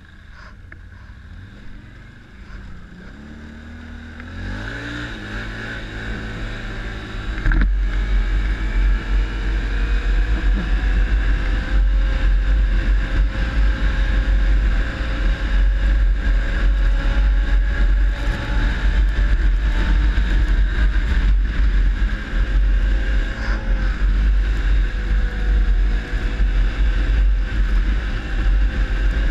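ATV engine picking up speed, its note rising from about four seconds in, then running steadily at speed while riding through snow. After about seven seconds it gets much louder, with a heavy low rumble of wind buffeting the microphone.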